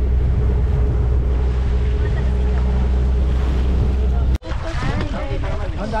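Outrigger boat's engine running steadily under way, with wind on the microphone. The drone cuts off abruptly a little over four seconds in, giving way to several people's voices over water.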